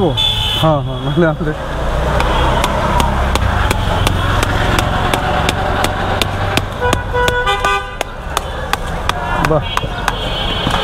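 Street traffic with a steady low rumble and vehicle horns sounding. A warbling horn is heard at the start and again near the end, with steady horn blasts about seven to eight seconds in. A run of sharp, evenly spaced clicks runs through the middle.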